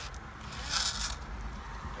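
Fried pie being slid out of its cardboard sleeve: a short scraping rustle about a second in, over a car's low steady rumble.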